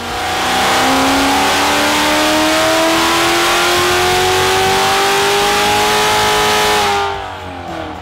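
A high-performance car engine making a full-throttle dyno pull under load. The revs climb steadily for about six seconds, then drop away as it backs off near the end.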